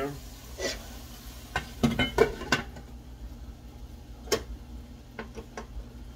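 Cookware clattering: a wooden spoon and a lid knocking and clinking against a frying pan, in a string of sharp separate knocks, several close together about two seconds in and one louder knock past the middle.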